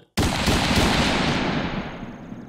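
Channel intro sound effect: a sudden loud crash-like hit just after the start, followed by a long noisy tail that slowly fades.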